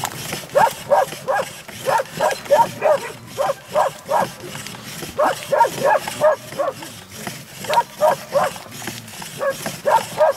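Traditional rope-pulled wooden churning stick squeaking as it turns back and forth in a metal pot of milk. The short pitched squeaks come about three a second, in runs of a few at a time with brief pauses between.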